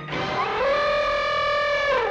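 An elephant trumpeting: one long call that rises, holds steady and drops away near the end.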